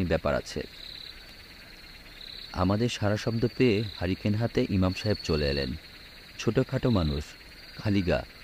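Night ambience of crickets chirping, a steady high trill with brief louder chirps, laid under a voice reading aloud in Bengali that pauses between phrases.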